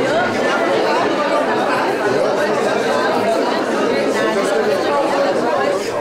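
Chatter of many people talking at once, overlapping voices with no single speaker standing out.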